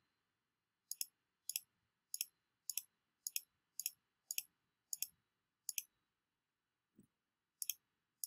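Faint computer clicks, about ten of them roughly every half second, many heard as a quick double click of button press and release, as files are selected one by one in a file dialog. A soft low thump comes near 7 s and one last click near the end.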